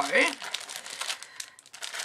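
Plastic packets of clear stamp sets crinkling as they are handled and shuffled, a quick run of small crackles.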